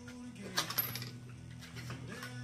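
A few sharp metallic clinks about half a second in, as a big heavy hammer and a small ball-peen hammer are picked up and knock against each other, over a steady low hum.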